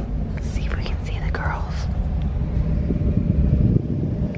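Brief whispering in the first two seconds over a steady low rumble of camera handling noise. The rumble grows louder and cuts back shortly before the end.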